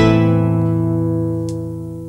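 A strummed acoustic guitar chord is left ringing and slowly fades out.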